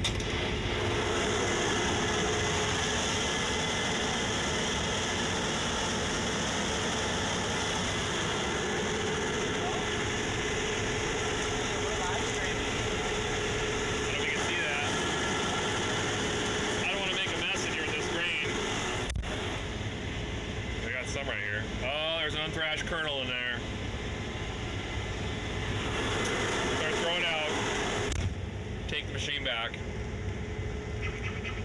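Case IH 8250 combine running under load while harvesting, heard loud and steady from its open operator platform: engine, threshing and header noise with a steady hum. Near the end the noise drops and turns more muffled.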